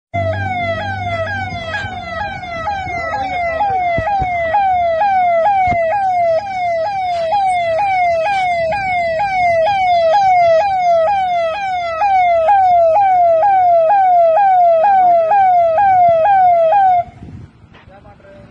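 Police vehicle siren sounding a fast, loud, repeating wail, about two rising-and-falling sweeps a second, which cuts off suddenly near the end.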